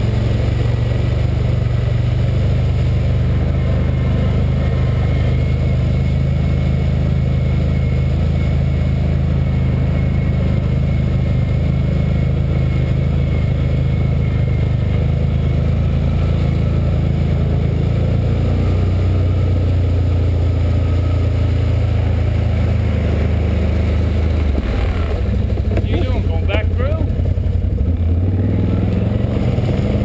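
Can-Am Outlander 1000's V-twin engine running steadily under throttle as the ATV wades along a flooded, muddy trail. Its note wavers and changes about 25 seconds in.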